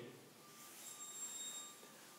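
Quiet room tone with faint hiss in a pause between spoken sentences; a faint, thin, high steady tone sounds for about a second in the middle.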